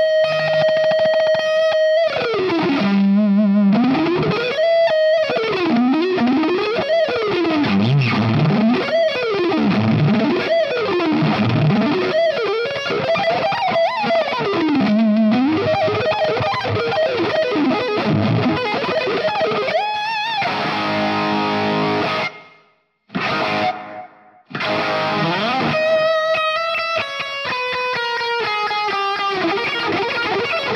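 Distorted electric guitar playing a neoclassical lead through a Line 6 Helix set to a bright Plexi amp model with overdrive and hall reverb. It opens on a held high note, then plays fast scale runs sweeping down and up, stops for about two seconds about two-thirds through, and returns with another held note and falling runs.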